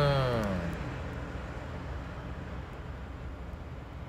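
Road traffic noise, fading over the first couple of seconds and then holding steady and low.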